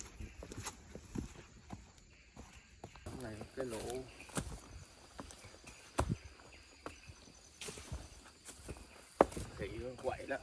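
Footsteps of people walking on a rocky trail: quiet, irregular scuffs and sharp knocks of shoes on stone, spaced a second or so apart.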